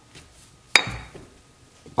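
A single sharp metallic clink with a short ring, about three quarters of a second in, as a cast-iron lathe faceplate is handled and set down.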